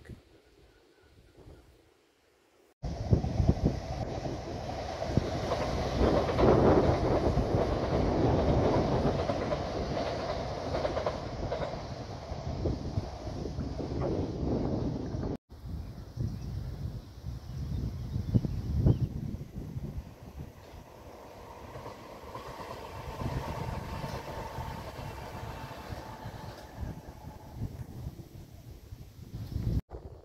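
A Gatwick Express electric multiple unit passing on the main line, with rumble and wheel noise on the rails. It comes in suddenly about three seconds in and is loudest over the next ten seconds, then drops off abruptly and carries on quieter with a faint steady whine.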